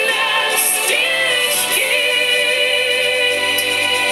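A woman singing a pop ballad live with band accompaniment: two short upward-sliding phrases, then a long held note.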